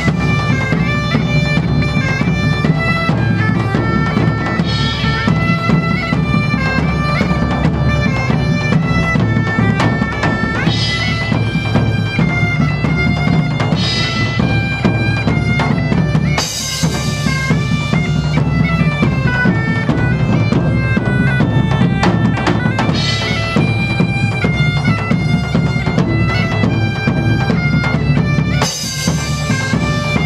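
German bagpipes playing a melody over a steady drone, with large drums beating a continuous rhythm and a few cymbal crashes, the loudest about halfway through and near the end.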